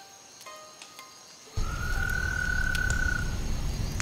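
After a quiet first second and a half, night-time ambience cuts in abruptly: a low rumble, with a single high, steady frog trill lasting a little under two seconds.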